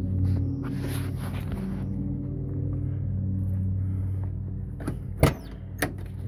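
A steady low hum runs throughout. Near the end come two sharp metallic clicks about half a second apart: the latch of a truck's cab door being worked as the door is opened.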